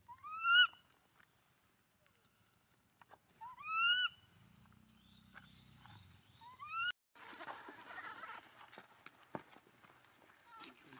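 Long-tailed macaque giving three short rising, whistle-like cries, spaced about three seconds apart. After a sudden break, a stretch of rustling and scuffling follows.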